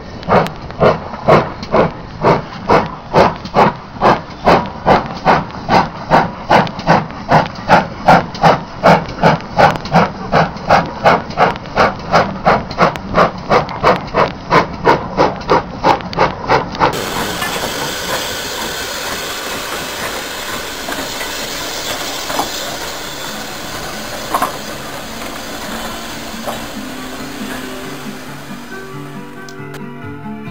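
Steam locomotive chuffing in an even rhythm of about two and a half exhaust beats a second. The chuffing stops about 17 seconds in, leaving a steady rushing hiss with a single sharp knock near the end.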